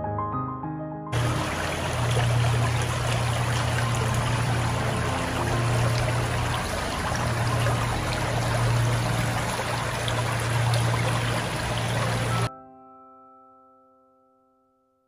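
Shallow stream running over stones, a steady rush of water that cuts in about a second in and stops suddenly near the end. Piano music plays just before it, and a held piano chord fades out after it.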